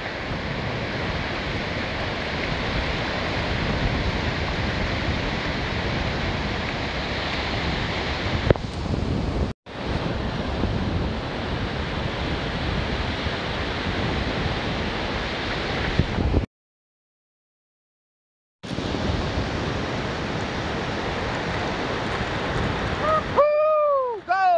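Wind buffeting the microphone over breaking surf on a beach, a steady rushing noise. It cuts out briefly about ten seconds in, and again for about two seconds past the middle.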